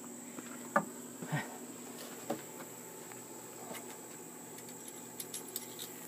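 A few light knocks and clicks of handling, the loudest about a second in, over a steady faint high-pitched whine; no drill runs.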